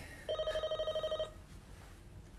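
A mobile phone ringing: one fast-trilling electronic ring tone lasting about a second, then stopping.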